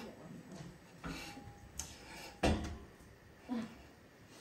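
A pause at a lectern microphone: a few short breaths, a sharp knock about two and a half seconds in, and a brief low vocal sound near the end.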